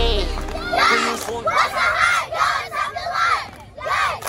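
A group of young girl cheerleaders chanting a cheer together in short shouted phrases. Recorded music fades out within the first second.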